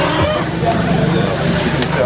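A vehicle engine running steadily, with several people talking over it.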